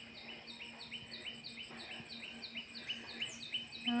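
A bird calling outdoors with short, upward-hooked chirps repeated about four times a second, alternating between two pitches, over a steady high-pitched insect drone.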